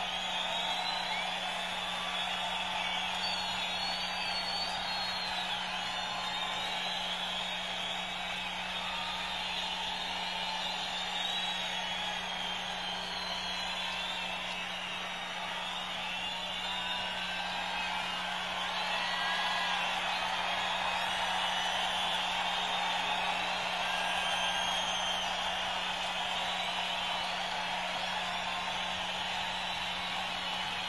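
Large concert crowd cheering steadily, with many whistles and whoops rising and falling over the roar, and a faint steady hum underneath.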